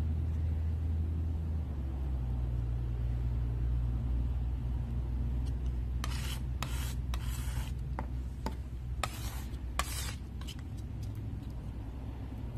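Paint knife scraping and spreading thick paint across a flat surface: a few short scraping strokes between about six and ten seconds in, over a steady low hum.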